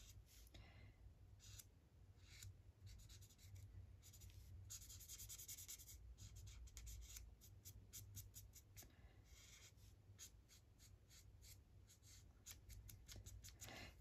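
Faint scratching of an Ohuhu alcohol marker's felt tip on paper, in many short quick colouring strokes.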